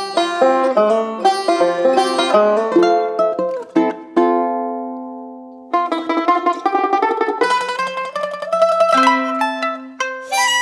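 The same short jazzy lick played in turn on small plucked string instruments: banjo, tenor ukulele, banjoline, mandolin and cavaquinho. Quick runs of plucked notes, with one held note fading away about four seconds in.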